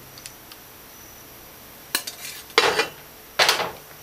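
Metal ladle knocking and scraping against a ceramic bowl as stew is served into it: a sharp click about two seconds in, then two louder scrapes in the last second and a half.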